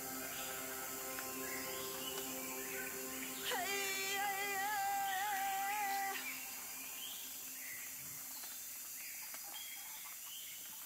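Closing bars of a live song played on a Nord Stage keyboard: held chords, joined about three and a half seconds in by a wavering high note that lasts under three seconds. Then the music stops, leaving only a faint steady hum.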